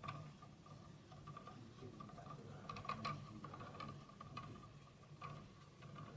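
Faint, irregular light ticking from a magnet rotor spinning freely on its wooden rod above a ring of magnets. The ticks bunch up about three seconds in and again near five seconds, over a steady faint high hum.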